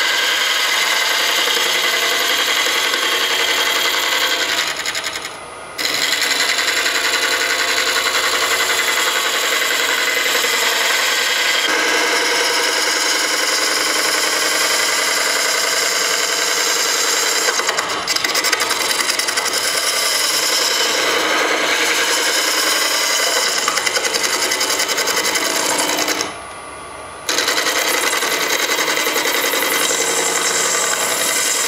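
Wood lathe spinning an epoxy-resin-and-hardwood bowl blank at about 900 rpm while a negative rake carbide scraper cuts its face, a continuous rough cutting noise over the lathe's running hum. The cut drops out briefly twice, once about five seconds in and again near the end.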